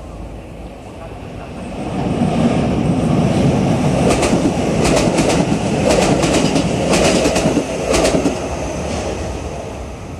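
Keio DeYa 900 inspection train, with its DAX track-measuring car, passing close by without stopping. The running noise swells about two seconds in, with a run of sharp wheel clacks over rail joints between about four and eight seconds, then fades.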